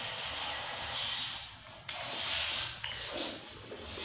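Close-up chewing and wet mouth sounds of eating chewy watermelon jelly pudding, with two sharp clicks about a second apart near the middle.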